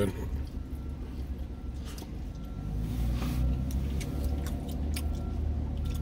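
Steady low hum of a car's engine or climate fan heard inside the cabin, with soft clicks and smacks of chewing food.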